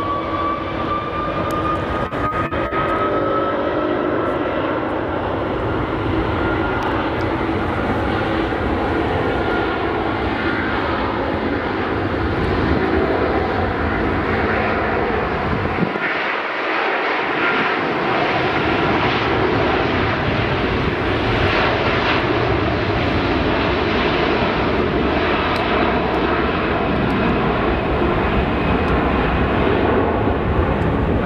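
Airbus A350 jet engines (Rolls-Royce Trent XWB) spooling up for takeoff, a loud steady jet noise with a high whine that rises in pitch over the first few seconds.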